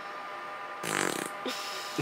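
A person's short, breathy whispered word about a second in, rough and raspy in tone, over a faint steady background hum.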